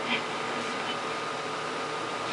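A 1950s Murphy TA154 valve radio's loudspeaker hissing with steady static between stations while it is being tuned, with a faint steady tone running through the hiss.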